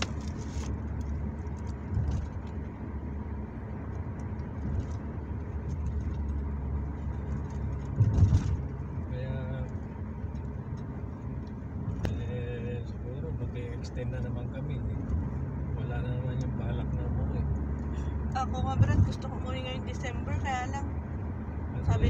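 Steady low rumble of a car's engine and tyres heard from inside the cabin while driving, with two louder bumps, one about a third of the way in and one near the end. Faint voices talk in the background.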